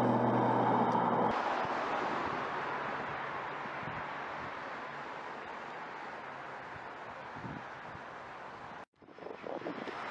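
Outdoor background noise. A low steady hum stops about a second in, then an even rushing noise slowly fades and cuts off abruptly near the end.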